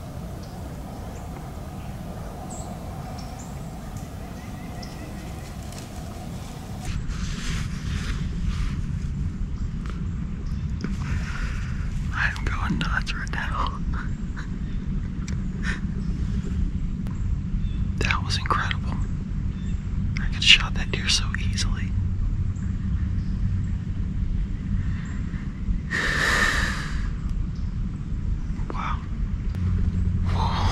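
A man whispering in short, scattered bursts over a steady low rumble, which starts about seven seconds in.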